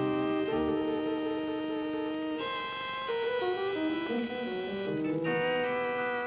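Closing theme music played on an organ: sustained chords that shift to new chords a few times.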